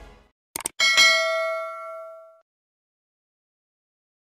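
A notification-bell sound effect: two short clicks, then a single bright bell ding about a second in that rings out and fades over about a second and a half.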